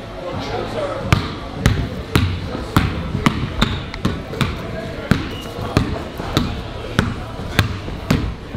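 A basketball being dribbled on a hardwood floor, bouncing about twice a second, starting about a second in.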